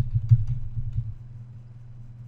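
A few faint computer mouse clicks over a steady low hum, with low muffled bumps in the first second.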